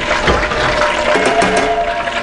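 Hot frying oil in a cast-iron skillet sizzling steadily, with many small pops and crackles.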